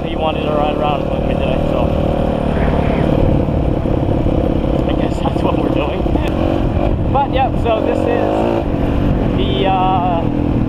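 Dirt bike engine running under way along a trail, the revs rising and falling with the throttle a few times, with heavy low rumble from wind on a helmet-mounted microphone.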